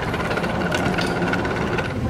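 Air pumps running: a steady mechanical drone with a thin, steady high whine and a few light clicks.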